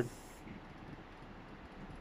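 Faint, steady outdoor background noise with no distinct sound in it: a low, even hiss of open-air ambience.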